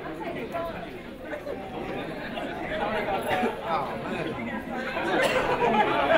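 Murmur of several people talking at once, overlapping voices with no single speaker standing out, growing louder in the second half.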